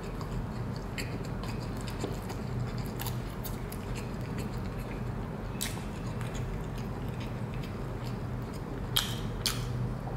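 A person chewing a mouthful of a fish fillet sandwich in a soft bun, with faint scattered wet mouth clicks. A steady low hum runs underneath.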